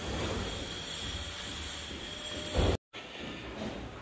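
Steady whirring hum of a hybrid solar inverter's cooling fans. A short louder noise comes just before the sound cuts out briefly about three-quarters of the way through.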